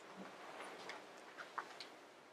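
A quiet room with a few faint, irregularly spaced ticks and clicks.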